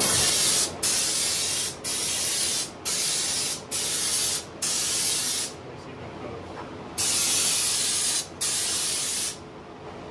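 Air-powered spray gun on a bottle of U-POL Raptor bed liner, set at about 30 PSI, spraying the textured coating in about eight hissing bursts of a second or less as the trigger is pulled and let go. A longer pause comes around the middle, and the spraying stops shortly before the end.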